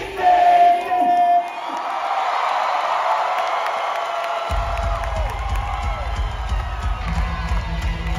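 Live pop-punk band breaking off mid-song: a high note held for about a second and a half, then a few seconds of crowd cheering and whooping with no bass or drums. The full band comes back in about four and a half seconds in.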